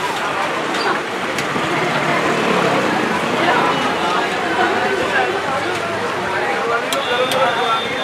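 Background chatter of several voices over street noise and the sizzle of jalebis and pakoras deep-frying in a large kadai of hot oil, with a few light clicks.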